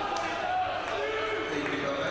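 Live sound of a futsal game in an echoing sports hall: a ball kicked near the start, with faint, distant shouting from players.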